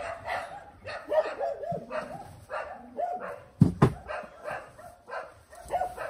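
Dogs barking repeatedly in short yaps. Two loud thumps come a little past halfway.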